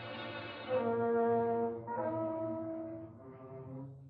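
Orchestral film score: brass playing a few long held notes, the note changing about once a second, with no speech.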